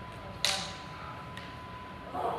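Two practice longswords striking together once, a sharp clack about half a second in with a short ringing tail, followed by a faint tap. A thin steady hum runs underneath.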